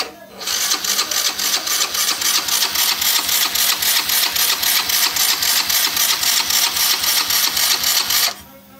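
A click, then the Yamaha Cuxi 100 scooter's single-cylinder four-stroke engine, just started, runs loudly with a fast, even beat, heard close to the engine. It cuts off suddenly at the very end.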